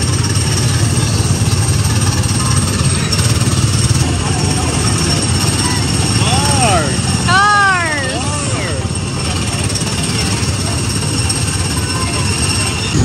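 Gasoline engines of the Tomorrowland Speedway ride cars running with a steady, rattly drone. A young child's high voice rises and falls in a few short calls around the middle.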